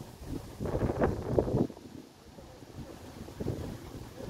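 Wind buffeting a phone's microphone, with a low rumble throughout and a stronger gust from about half a second in to just under two seconds.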